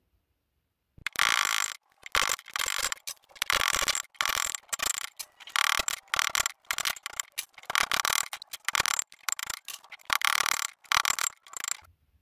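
Copper pipe pieces being squeezed flat with pliers on a steel block: a rapid run of short, irregular metallic squeaks and scrapes starting about a second in.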